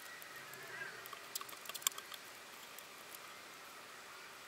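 A few faint, light clicks and ticks, clustered about one to two seconds in, as small brass photo-etch parts are handled and set down by hand.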